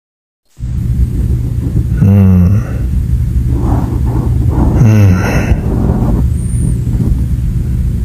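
A man's voice making two short wordless sounds, about two seconds in and again about five seconds in, each sliding down in pitch, over a steady low rumble.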